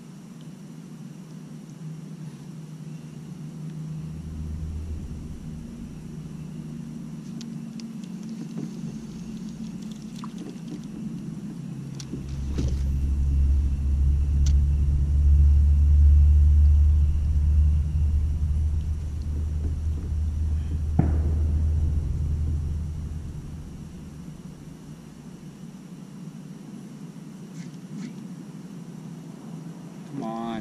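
A deep, low rumble that swells for about ten seconds in the middle, with a few faint clicks.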